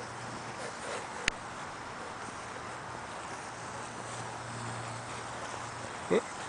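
Quiet outdoor background noise with a faint steady low hum, broken by a single sharp click about a second in.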